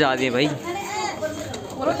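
People's voices: a short burst of speech at the start, then a quieter stretch of faint murmuring voices over a low steady hum.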